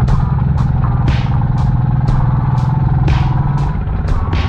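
Fuel-injected two-stroke Husqvarna dirt bike engine running under throttle on a climb, its note steady and easing off near the end. Background music with a steady beat plays over it.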